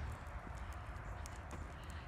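Footsteps on a wet tarmac lane, faint and irregular, over a steady low rumble on the microphone.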